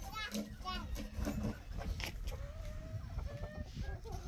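A small child's high-pitched voice babbling and squealing in quick, wavering calls, mostly in the first second, with a few quieter drawn-out sounds later.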